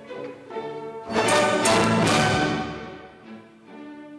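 Orchestral music with strings; about a second in, the full orchestra rises to a loud, bright climax that dies away by about three seconds, leaving quieter strings.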